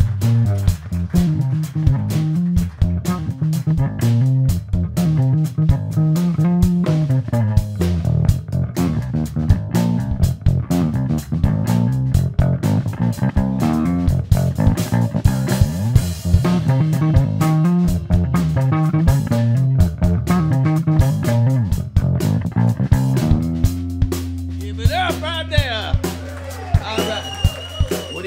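Electric bass guitar solo: runs of low plucked notes over a steady beat, settling on one held low note near the end. A voice calls out over the held note in the last few seconds.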